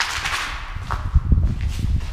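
Footsteps and scuffing on a floor littered with debris, with irregular low thumps and a few sharp clicks as the handheld camera jostles with the walking.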